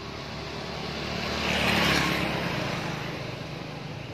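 A vehicle passing by on the road, growing louder to a peak about two seconds in and then fading away.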